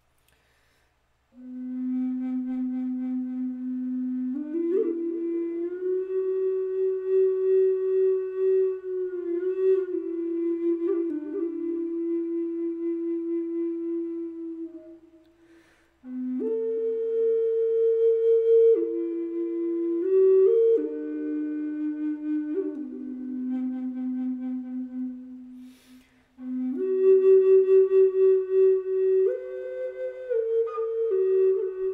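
Six-hole Native American style flute of Alaskan yellow cedar in the key of low C, tuned to 432 Hz, played in a slow improvisation. It plays long held notes, starting on the low root note, with a few quick ornaments. There are three phrases, with short breath pauses between them.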